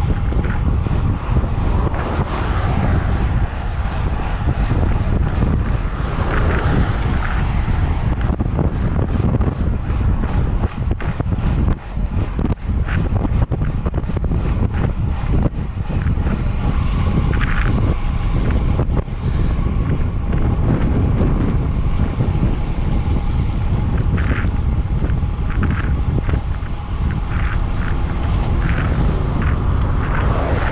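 Steady wind noise buffeting the microphone of a handlebar-mounted camera on a road bike moving at about 40 km/h, with a few short clicks in the second half.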